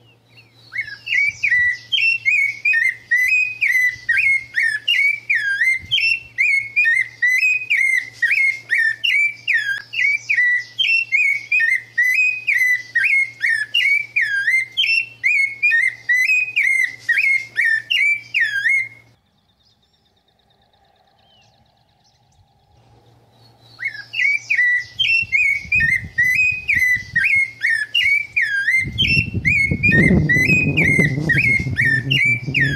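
A songbird singing a long, fast run of wavering whistled notes, about three or four a second. The song breaks off for a few seconds past the middle and then starts again. A low rumble comes up near the end.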